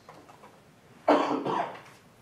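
A person coughing, a short double cough about a second in.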